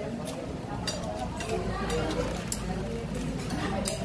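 A metal spoon scooping rice from a woven bamboo rice basket onto a plate, giving a few light clicks and clinks against the basket and the crockery, over the murmur of voices.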